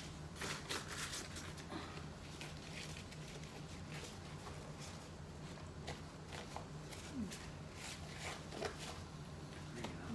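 Soft rustling and crinkling of dried corn husks and a plastic bag being handled while tamales are wrapped, thickest in the first second or so. A faint steady low hum runs underneath.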